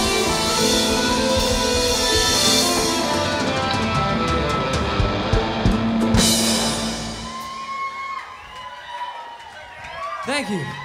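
Live indie rock band playing the close of a song on electric guitar, keyboard and drum kit, with a few hard drum hits about five to six seconds in. The music stops a little after seven seconds, leaving quieter scattered crowd voices.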